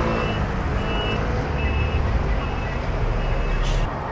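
City bus engine rumbling low as the bus comes past the stop, over street traffic, the rumble growing stronger about halfway through. A few short high beeps sound in the first two seconds.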